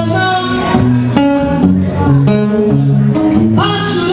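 Acoustic guitar played live, a steady run of picked and strummed chords with no break.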